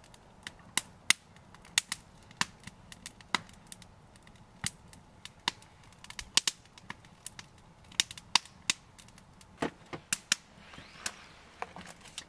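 Wood fire crackling in a steel fire pit: irregular sharp pops and snaps, a few each second, some much louder than others.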